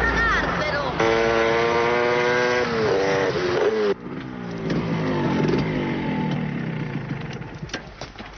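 A motor vehicle engine held at a steady pitch, then falling in pitch as it slows or moves away. After a sudden cut about four seconds in, a second engine sound slides steadily lower and fades.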